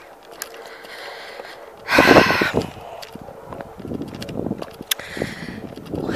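Footsteps crunching on a dirt-and-gravel track during a walk, with a brief, louder whoosh of noise about two seconds in.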